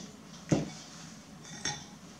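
Small glass bowls being handled at a stainless mesh sieve: a sharp knock about half a second in and a lighter clink a second later.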